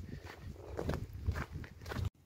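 Footsteps of a hiker walking on a snowy mountain trail, a step about every half second.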